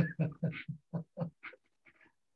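A man laughing over a video call: a run of short breathy laughs that get quieter and trail off after about a second and a half.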